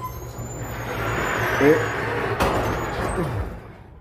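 Electric garage door opener running and lifting a sectional garage door, a steady mechanical rumble of motor and rolling door that winds down near the end. The trolley has just been re-engaged after the emergency release, so the opener is moving the door again.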